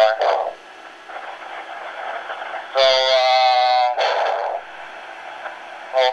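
Sound from a handheld ham radio's speaker. A spoken word cuts off at the start, then channel hiss, then about a second of a steady, buzzy held tone near the middle, followed by a short rush of noise and low hiss.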